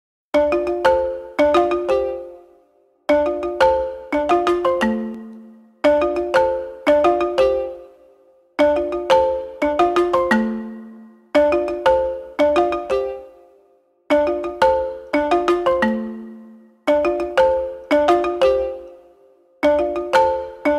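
Background music: a short, bright phrase of struck notes that ring and die away, looping about every three seconds with a low thump at the start of each phrase.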